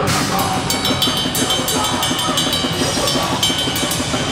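Punk rock band playing live at full volume, the drum kit to the fore: a cymbal crash at the start, then fast, even cymbal strokes over bass drum and the rest of the band.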